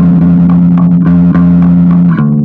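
Ibanez TR-series electric bass played through a Crate BT15 bass amp: one low note picked over and over, about four times a second.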